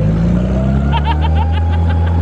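Amphicar's four-cylinder engine running steadily as the car motors across the water, its pitch rising slightly in the first half second. Brief high voices or laughter come in about a second in.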